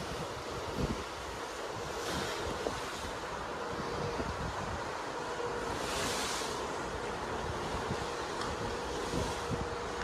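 Wind rushing over the microphone on a cruise ship's open deck, over the wash of choppy sea below, with a faint steady hum in the second half.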